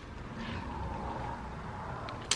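Steady low background hum and hiss of room noise, with no distinct event.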